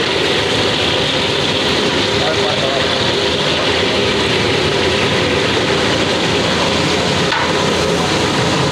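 Sliced onions sizzling as they are tipped into hot oil in a large steel cooking pot. The sizzle is a loud, steady hiss.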